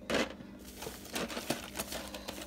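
Thin plastic produce bags and snack packaging crinkling and rustling in short, irregular bursts as groceries are handled, with a few sharp clicks.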